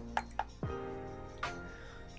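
Two short clicks in the first half-second as a button on an EV-Peak CQ3 battery charger is pressed, then background music with steady held notes.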